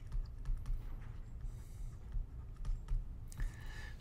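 Faint, scattered clicks and taps of a computer pointing device being used to hand-write on screen, over a low steady hum.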